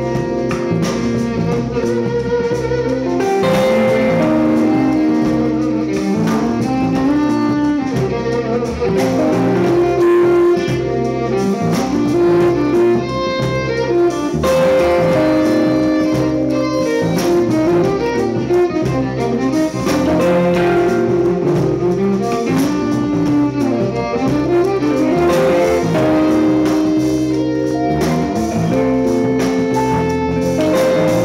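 Live band music: a violin plays melodic lines over electric guitar, bass and drums.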